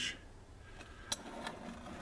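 Thin steel knife blanks slid by hand across a wooden workbench: faint scraping, with a couple of light clicks a little after a second in.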